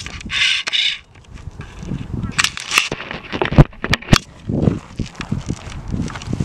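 Camera handling noise: a brief hiss in the first second, then scattered sharp knocks and clicks with rustling as the handheld camera is moved about.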